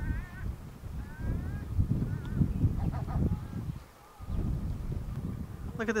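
Wind buffeting the microphone with a low, uneven rumble, and a few short wavering bird calls in the first two seconds. The sound drops out briefly about four seconds in, then the wind rumble returns.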